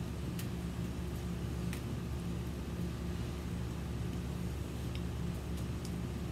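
A steady low mechanical hum, with a few faint clicks over it.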